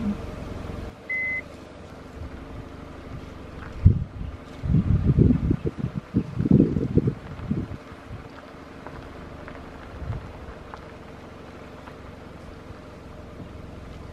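Car engine idling, heard from inside the vehicle, as a steady low hum. A short high beep sounds about a second in. Midway there is a cluster of rough, crackly bursts lasting about three seconds.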